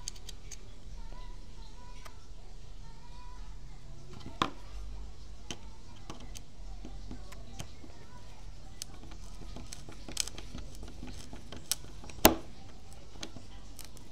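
Scattered light metal clicks and taps of a tool against a steel concealed cabinet hinge set in a wooden frame, the sharpest about four, ten and twelve seconds in, the twelve-second one the loudest, over a low steady hum.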